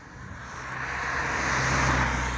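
A car approaching and passing close by, its tyre and engine noise growing steadily louder to a peak near the end.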